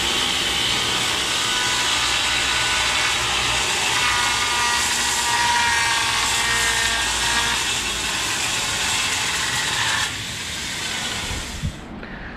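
Power saw cutting fiber-cement (Hardie) siding board, a loud steady cutting noise with a faint wavering whine, dropping off about ten seconds in.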